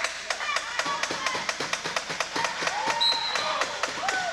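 Rubber wheelchair tyres squeaking on a polished gym floor in short rising-and-falling chirps, over a quick clatter of taps and knocks from sport wheelchairs pushed and turned on the court.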